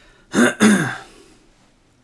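A man clearing his throat, in two quick loud bursts about half a second in.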